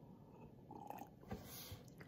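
Faint mouth sounds of a person drinking milk from a cup and swallowing, with a few small clicks.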